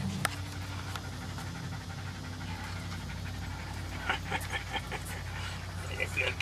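A toy rat terrier panting in quick short breaths, clearest about four seconds in, over a steady low hum.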